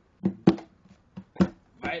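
A pause in an acoustic-guitar song, broken by four or five short, sharp hits. A voice begins the next line right at the end.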